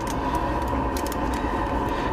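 Steady background hum, with a few faint light clicks during small hand movements.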